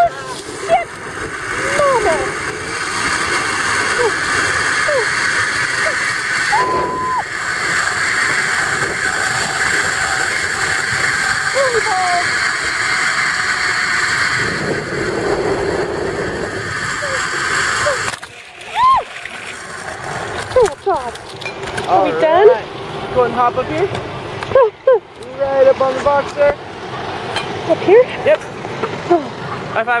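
Zip-line trolley pulleys running along the steel cable: a steady whirring hiss that stops abruptly about two-thirds of the way through as the rider reaches the brake at the end of the line. Short voiced exclamations follow.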